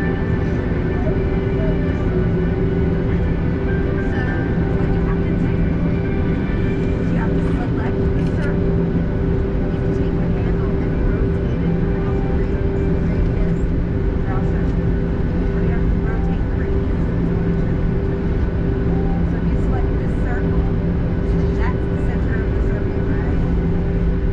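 Steady cabin noise of a Boeing 737-800 taxiing on the ground, its CFM56 engines at idle: a constant hum with two steady low tones, unchanging throughout. Faint passenger chatter lies under it.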